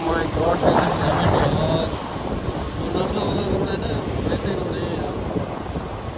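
Wind buffeting the microphone of a moving motorcycle, a steady rushing noise, with road noise from wet tarmac beneath it.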